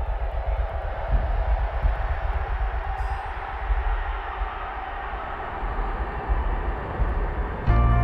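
Sound-design ambience: a dense, rumbling noise with a heavy low end. About three-quarters of a second before the end it gives way abruptly to a louder ambient music drone of sustained tones.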